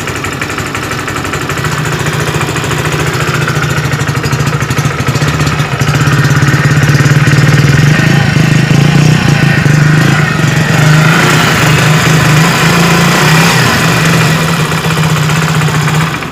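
Hero HF Deluxe BS6's 97.2 cc air-cooled, fuel-injected single-cylinder four-stroke engine idling steadily, recorded close up, growing a little louder until about six seconds in.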